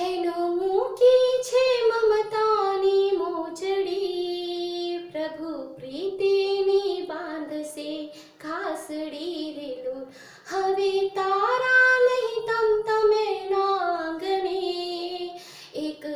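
A woman singing solo and unaccompanied, in phrases of long held, wavering notes with short breaks between them.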